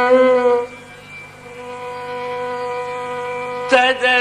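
Carnatic concert music in raga Pantuvarali over a steady drone. An ornamented melodic phrase ends under a second in and the drone holds alone, quieter, until the melody comes back in with a sharp attack near the end.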